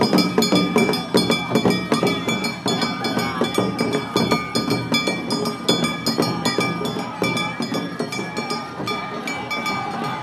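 Japanese festival street music: drums and small metal gongs or bells beaten in a dense, fast rhythm, their steady ringing running under the strokes.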